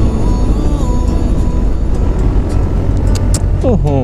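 Steady low rush of wind and engine drone from a Honda Forza 300 scooter's single-cylinder engine, cruising at road speed, with wind on the rider's camera microphone.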